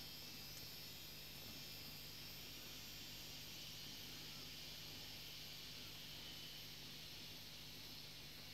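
Faint steady hiss with a low hum: room tone with no distinct event.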